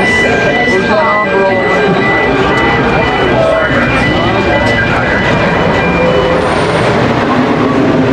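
Wooden roller coaster train rumbling steadily along its timber track, with riders' voices and cries over it.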